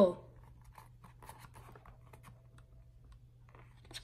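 Paper pages of a hardcover picture book being handled and turned, with faint, scattered rustles and crackles that grow a little louder near the end.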